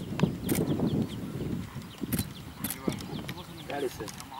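Outdoor field sound on a golf course: a series of sharp clicks and knocks over a low, uneven rumble, with brief indistinct voices near the end.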